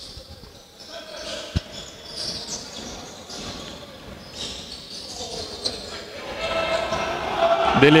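Basketball game sounds in a reverberant gym: a basketball bouncing on the hardwood court, with one sharp thud about a second and a half in, and players' voices calling out.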